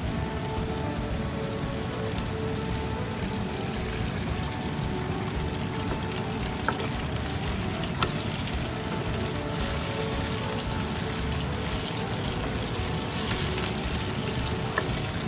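Onion, tomato and green chillies sizzling and bubbling steadily in oil in a nonstick pan. In the second half a wooden spatula stirs through them, with a couple of sharp taps against the pan.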